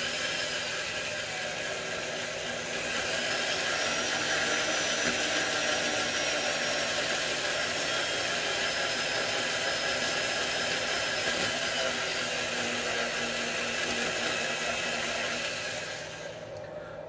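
Electric drill running steadily, spinning a worn motor armature while a hand file is held against the copper commutator, scraping it to true up its worn surface. The drill stops near the end.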